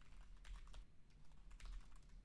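Faint typing on a computer keyboard: a quick, uneven run of keystrokes as a sentence is typed.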